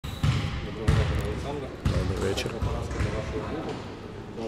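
Three dull, low thumps in the first two seconds, each sudden and irregularly spaced, with a man's voice saying a greeting near the middle.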